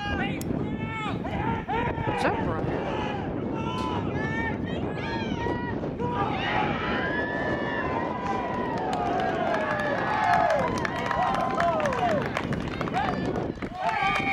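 Unintelligible shouts and calls from rugby players and touchline spectators during open play, over a steady outdoor rush. Several long, drawn-out shouts come in the second half as a player breaks away with the ball.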